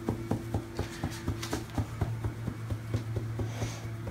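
A hand patting the back of a silicone baby doll through its shirt, evenly at about four pats a second, the way a baby is patted to bring up a burp.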